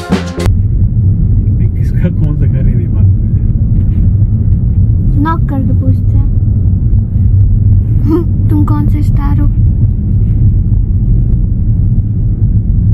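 Steady low rumble of road and engine noise inside a moving car's cabin, with faint voices now and then.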